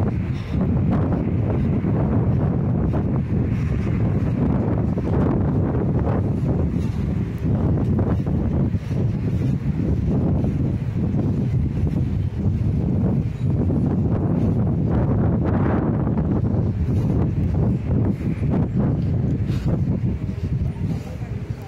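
Wind buffeting the microphone: a loud, uneven rumble that surges and dips irregularly throughout.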